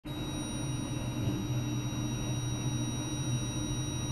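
Steady electronic test tones from a function-generator-driven speaker: two pure high pitches held constant over a low steady hum.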